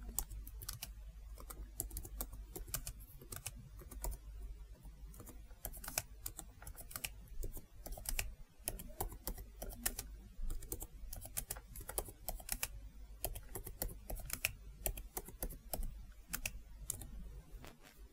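Typing on a computer keyboard: faint, irregular keystroke clicks, several a second with short pauses between.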